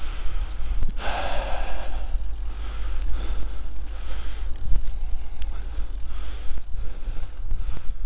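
Bicycle rolling over a rough, cracked tarmac path, heard from the bike: a steady low rumble of tyres and wind on the microphone, with scattered knocks and rattles from bumps in the surface. A brief louder hiss comes a second or so in.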